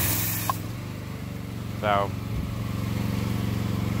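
A short hiss of foam-cannon spray hitting the mower's rear tire, cutting off about half a second in, over the steady drone of the small engine powering the pressure washer.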